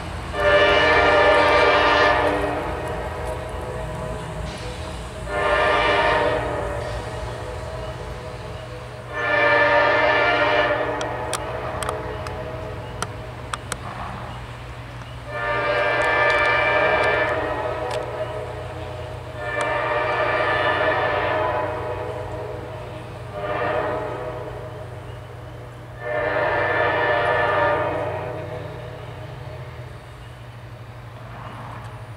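CSX diesel helper locomotives' air horn blowing seven blasts: long, short, long, then long, long, short, long, the pattern of the grade-crossing signal. Under the horn the locomotives' diesel engines run with a steady low rumble.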